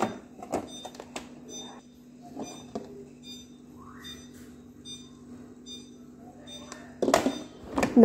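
Plastic containers and shelf bins in a refrigerator door being handled, giving scattered light clicks and knocks over a low steady hum. The handling noise gets louder for a moment about seven seconds in.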